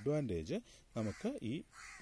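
A man's voice speaking in a lecture, in short phrases with brief pauses.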